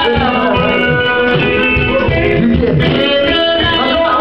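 Live gospel worship music: a band with guitar and a steady beat, with voices singing.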